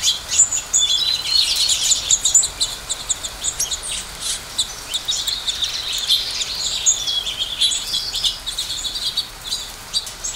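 A flock of small songbirds chirping continuously, many short overlapping chirps in a dense chatter.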